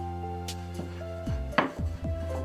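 Wooden rolling pin knocking and rolling on a wooden board as dumpling wrappers are rolled out: a few sharp knocks, the loudest near the end. Background music with sustained notes plays throughout.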